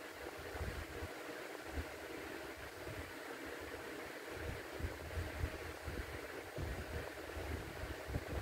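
Steady background hiss of indoor room noise, with irregular low rumbles and bumps.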